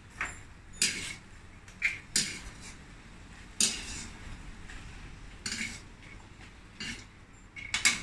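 Metal ladle clanking and scraping against a wok as fried beans are stirred and scooped, in about six separate strokes spread a second or so apart.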